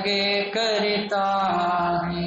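A man chanting a Hindi devotional verse to a slow melody, holding each note and stepping to a new pitch about every half second.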